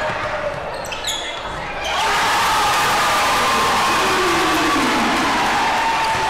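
A basketball bouncing and sharp short squeaks and knocks from play on a gym court, then about two seconds in the crowd suddenly breaks into loud, sustained cheering and yelling.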